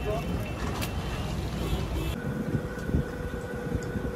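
Busy street background: a steady rumble of traffic with voices in the background. About halfway through it cuts to a quieter room with a steady electrical hum.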